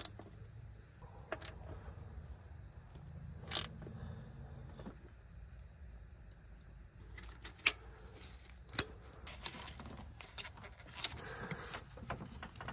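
Socket ratchet and socket working the throttle body mounting bolts: quiet, scattered metallic clicks and clinks, a few at first and more often about seven to eleven seconds in.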